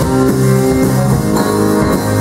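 Live band music: guitars playing an instrumental passage with no singing.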